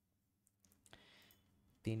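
A few faint computer mouse clicks, then a man's voice begins near the end.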